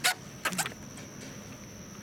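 Shoes scuffing and stepping on an aluminum boat's hull and gunwale as a man climbs aboard from the trailer. There is a sharp scuff at the start, then a short cluster of steps about half a second later.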